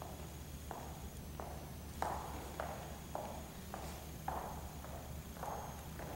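Slow, even footsteps on a hard floor, a little under two steps a second, each with a short ring in the room, over a faint steady hum.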